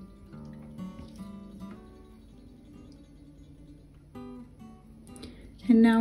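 Soft background music with a plucked acoustic guitar.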